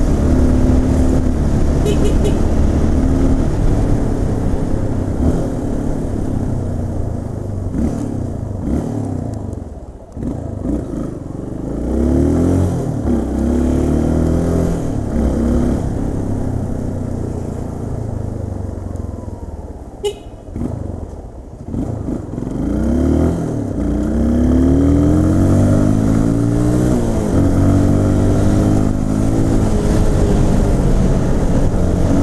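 Yamaha Lander 250's single-cylinder four-stroke engine heard from the rider's seat, pulling up through the gears and easing off again, its pitch climbing and dropping several times. There is a single sharp click about twenty seconds in.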